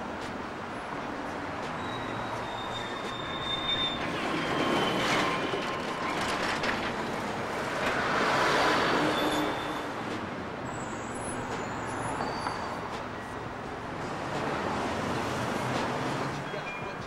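Steady vehicle noise, swelling in loudness about eight to nine seconds in, with a few faint high-pitched squeals.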